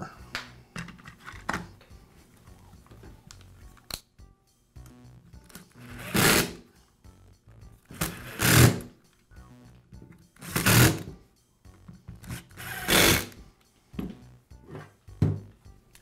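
Plastic belt cover clicking into place on a Makita belt sander, then a power driver run four times in short bursts about two seconds apart, driving in the cover's screws.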